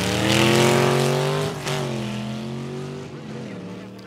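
Drag cars launching and accelerating away down the strip, led by a 1932 Ford gasser with a Buick Nailhead V8. The engine note climbs for about a second and a half, drops as it shifts gear, then carries on and fades as the cars pull away.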